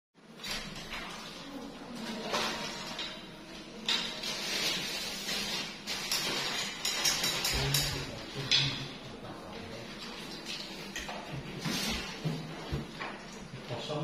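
Hinged plywood wardrobe doors being handled and swung open by hand: irregular knocks, clicks and rustles, with louder clusters around four, eight and twelve seconds in.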